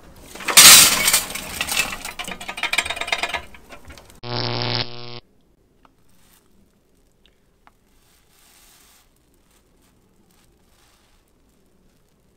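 Lit charcoal briquettes tipped from a chimney starter into a kettle grill: a loud rattling, clinking tumble of coals lasting about three seconds. Then a steady low buzzing tone for about a second that cuts off suddenly.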